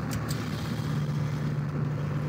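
A steady low hum with no other events.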